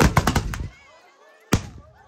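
A volley of black-powder muskets fired by the charging horsemen: several sharp shots in quick succession in the first half-second rather than one single blast, then one straggling shot about a second and a half in.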